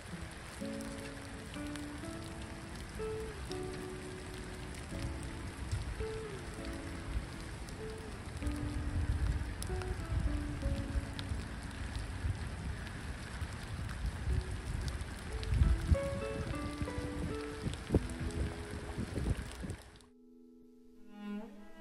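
Steady rain pattering on the surface of the water, with a slow melody of background music over it. A few low rumbles come and go, the loudest a little past the middle.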